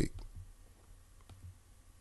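A few faint clicks, two of them close together about a second and a half in, over a low hum.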